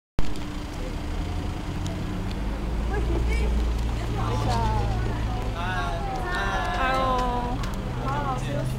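A vehicle engine idling with a steady low hum, and high-pitched voices chattering over it from about halfway through.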